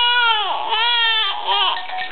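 A 19-week-old baby crying: one long held wail that falls off about half a second in, followed by two shorter cries.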